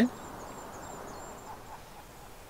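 Faint outdoor ambience: a low, steady hiss of open air with a thin, high, wavering tone that stops about one and a half seconds in.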